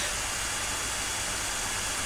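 Steady, even background hiss with no other sound.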